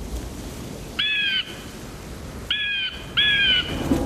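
A bird calls three times, each call short and slightly falling at the end. The first comes about a second in, and the last two come close together near the end, over a low steady background rumble.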